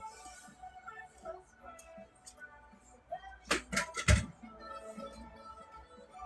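Quiet background music with short notes, and a few sharp knocks ending in a heavier thump about three and a half to four seconds in, as of equipment being handled.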